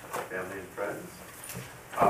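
Indistinct speech: people talking quietly in a meeting room, too low to make out words.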